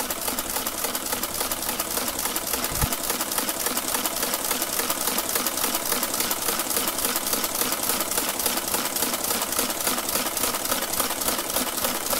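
Olivetti Multisumma 20 electromechanical adding machine cycling through an automatic multiplication, its motor-driven mechanism clattering in a fast, even rhythm of about ten clicks a second.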